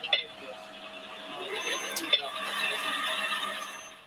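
Faint, indistinct voices over room noise with a steady hum, and a single sharp click about two seconds in.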